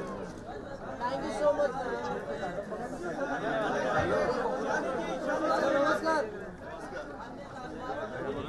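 Chatter: several people's voices talking over one another, with no one voice standing out.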